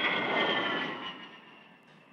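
A-10 Thunderbolt II's twin turbofan engines as the jet climbs away after takeoff: a loud rushing jet noise with a high whine that drops slightly in pitch and fades steadily as the aircraft recedes.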